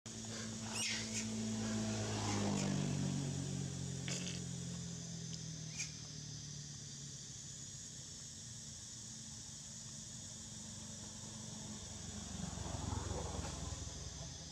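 A steady low hum like a distant motor running, dropping a step in pitch about two seconds in and fading out near the end, under a constant high hiss; a rushing swell of noise comes up shortly before the end.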